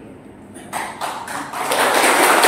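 A few short, light taps, three or four about a third of a second apart, in a pause between speech, with a man's voice starting again near the end.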